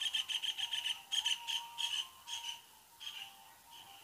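A small bird chirping in quick high runs of notes with short gaps between them, fainter than the narration.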